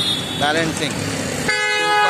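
A vehicle horn toots once, a steady note held for about half a second near the end, over street traffic.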